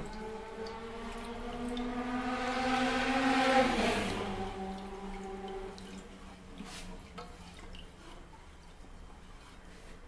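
Milk and egg yolk being stirred with a wooden spatula in a saucepan: a soft liquid swishing. Under it runs a steady humming tone with overtones that swells to its loudest about three to four seconds in, then fades to a faint low hum.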